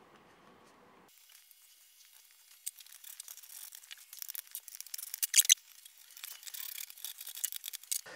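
After a near-silent start, light scattered metallic clicks and rattles of nuts and a spanner being worked onto threaded rod, with one sharper click about five and a half seconds in.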